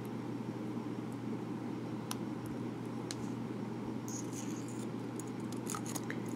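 Faint clicks and light scratchy handling sounds as the metal parts of a Monteverde Invincia multi-function pen are fitted back together, a few single clicks first, then a cluster of small ticks toward the end as the barrel is brought to be screwed on. A steady low room hum runs underneath.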